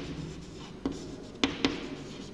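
Chalk writing on a blackboard: faint scratching as a word is written, with three sharp chalk taps against the board in the second half.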